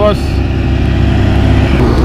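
Road vehicle engine humming steadily, with a rushing noise that stops near the end.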